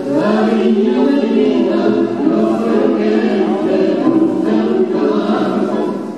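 Recorded tango music playing for dancing, a singing voice over the orchestra, ending right at the close.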